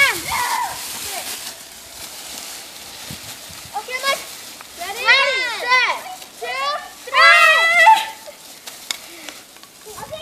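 Girls shrieking and squealing as they play, in high rising-and-falling cries that are loudest in two bursts after the middle, over the crackling rustle of dry fallen leaves being kicked and thrown.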